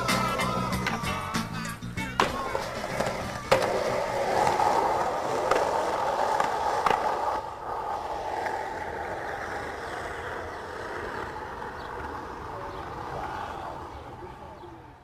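Skateboard wheels rolling on asphalt street, with two sharp clacks of the board about two and three and a half seconds in. The rolling then runs on steadily and slowly fades near the end. Music plays over the first two seconds.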